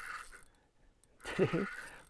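A short grunt or laugh-like voice sound about halfway through, with faint hiss and small metallic clinks from a fishing rod and reel being handled while a hooked fish is played. The sound drops almost to nothing for a moment just before the voice.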